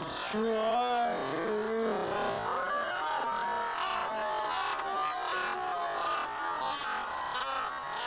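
Audio of a Korean TV show clip played back at quarter speed: the show's voices and music slowed and stretched into long, warbling tones.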